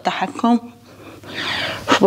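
A woman's short voiced grunt, then a breathy exhale blown out about a second and a half in as she presses up through a knee push-up.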